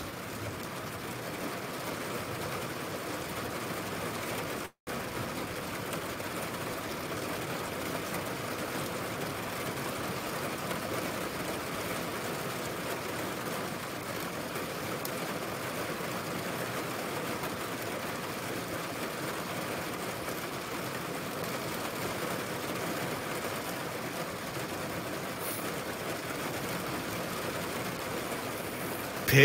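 Steady hiss of heavy rain during a thunderstorm, even and unbroken apart from a split-second dropout about five seconds in.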